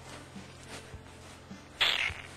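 Near the end, a short, loud clatter of china plates and cutlery shifting against each other as the stacked plates are carried. Before it there are only a few faint soft knocks over a low, steady background hum.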